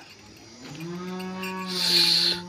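Hallikar bull mooing: one long, low moo starting about half a second in and holding a steady pitch, with a hiss near the end.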